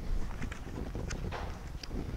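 A picture book's paper page being turned and handled close to a clip-on microphone: a few light rustles and clicks over a low rumble.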